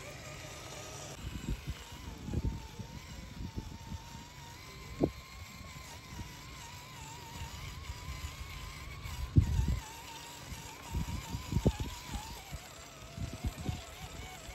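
Electric motor and gear drivetrain of an Axial SCX10 III Early Bronco RC crawler whining as it crawls slowly, the pitch wavering up and down with the throttle. Scattered low thumps come over it, the loudest about nine and a half seconds in.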